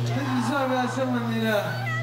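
A man singing into a microphone through the PA in a drawn-out, wavering, wailing line, over a steady low drone from the stage.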